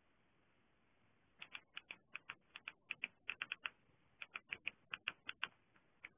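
Keys being pressed: about two dozen light, sharp clicks in quick, irregular runs, starting about a second and a half in.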